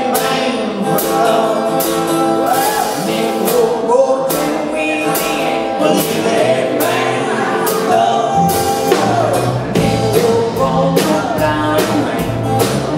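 A bluegrass band playing live: a man sings over acoustic guitar, upright bass and a drum kit keeping a steady beat. Deeper bass notes come in about eight seconds in.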